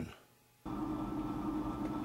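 The tail of a man's words, a moment of near silence, then a steady low background hum that starts abruptly about two-thirds of a second in, where the recording cuts to a new shot.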